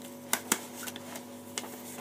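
Paper being handled and pressed flat: two sharp crackles about a fifth of a second apart, then a few faint ticks.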